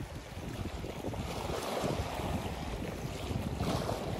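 Small sea waves washing over shoreline rocks, with wind on the microphone. The wash swells a little about a second in.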